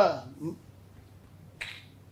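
A man's lecturing voice breaks off into a short pause, with one brief sharp click about one and a half seconds in.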